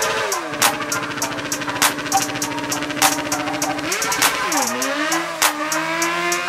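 Suzuki GSX-R sportbike engine held at high revs through a rear-tyre burnout. It drops and climbs again about four seconds in. A hip-hop beat plays over it.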